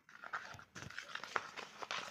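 Metal spoon stirring thick cream in a plastic bowl: faint, irregular scrapes and light clicks of the spoon against the bowl.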